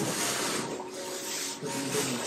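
A large refrigerator being shifted by hand, its body scraping and rubbing in a few long, noisy strokes as it is moved.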